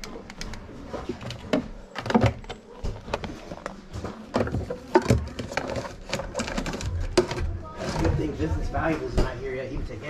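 Indistinct conversation of people in the room, with repeated clicks and clatter of plastic remote controls being picked up and handled.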